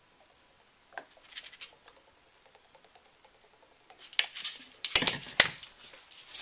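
A few faint light clicks, then from about four seconds in a wooden spoon stirring thick hot fudge in a stainless steel saucepan, scraping and knocking against the pot, with two sharp knocks near the end.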